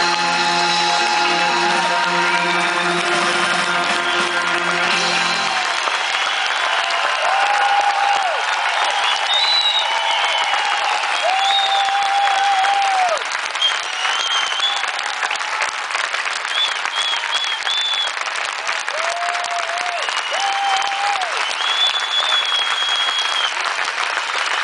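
A live band holds the last chord of the song, which stops about five seconds in. Sustained audience applause follows, with held whistle-like tones sounding over the clapping.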